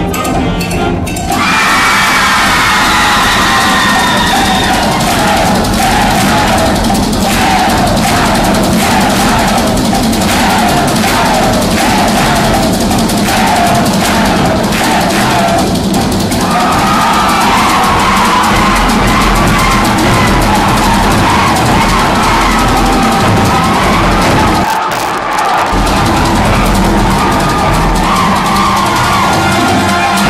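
School concert band playing loudly: sustained, shifting wind-instrument chords over drums. A regular pulse comes about once a second through the middle, and the sound briefly thins near the end.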